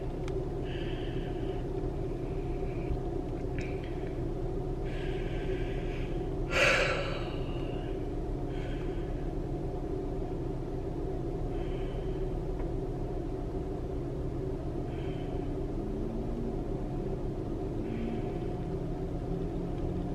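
Steady low rumble of a car's engine and road noise heard from inside the cabin while driving, with one short louder sound about six and a half seconds in.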